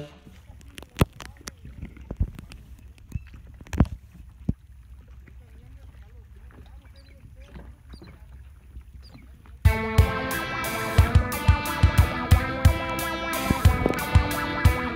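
A quiet stretch of scattered sharp knocks and clicks with faint distant voices. Background music with guitar and a regular beat starts abruptly about ten seconds in.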